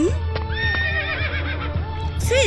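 A horse whinnying once, a high call that holds and then quavers and falls, over steady background music.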